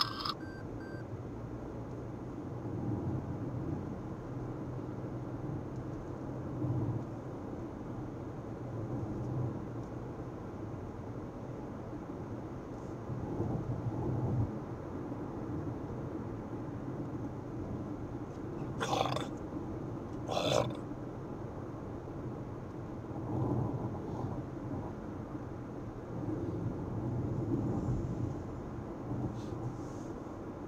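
Car driving at road speed, heard inside the cabin: a steady low rumble of tyres and engine. About two-thirds of the way through come two brief sharp knocks or rattles, a second and a half apart.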